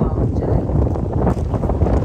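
Wind buffeting the microphone, a loud, continuous low rumble.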